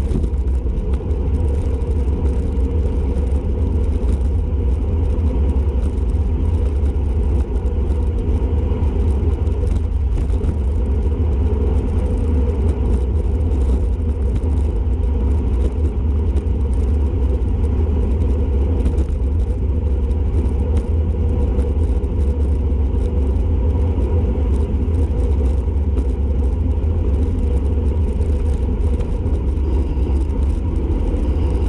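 Wind buffeting the microphone of a bicycle-mounted camera on a long, fast downhill coast: a loud, constant low rumble.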